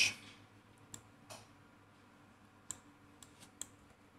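A handful of faint, sparse computer mouse clicks while settings are adjusted in an image editor, spaced irregularly across a few seconds.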